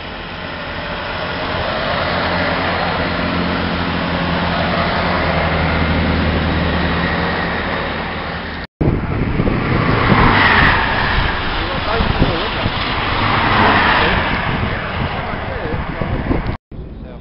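Class 165 Turbo diesel multiple unit passing through the station, its underfloor diesel engines and wheels on the rails swelling and then fading as it draws away. After a sudden cut comes a louder, rougher noise that swells twice.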